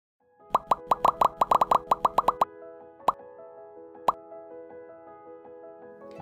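Intro music: a quick run of about fifteen bubbly rising plop sound effects, then two single plops about a second apart, over soft held tones.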